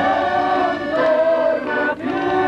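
A group of people singing together to an accordion, the voices and squeezebox holding long notes.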